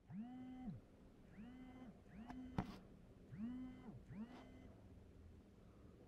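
Mobile phone vibrating on a hard surface in pairs of buzzes, each pair about two seconds apart; every buzz rises in pitch as it starts and drops as it stops. It signals an incoming call. There is a single sharp click about two and a half seconds in.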